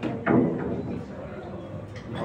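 A pool cue ball knocking off the table's cushion right at the start, followed about a quarter second later by a short, louder burst of sound. A low murmur of voices fills the hall behind it.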